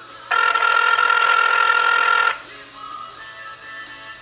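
Telephone ringback tone heard over a phone's speaker: one loud, steady ring about two seconds long, starting a moment in. It is the sign that an outgoing call is ringing at the other end.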